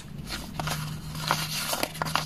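Paper envelopes rustling and crinkling softly as they are shuffled and picked up by hand, with a few light paper clicks. A faint steady low hum comes in about half a second in.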